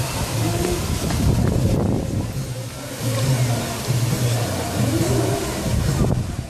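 Devotional kirtan music from a street procession, with group chanting heard from some distance over steady outdoor noise.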